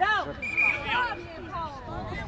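Shouted calls from young footballers and onlookers on the pitch: a few short, loud cries, at the start and again about a second in, over background chatter.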